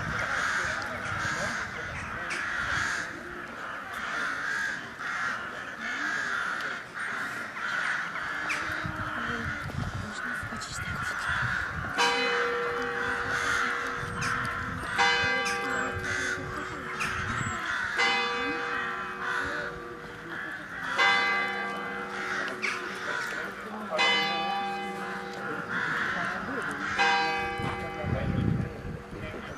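A church bell begins tolling about halfway through, one stroke every three seconds, each stroke ringing on into the next. Under it, the steady chatter of a crowd gathered outside.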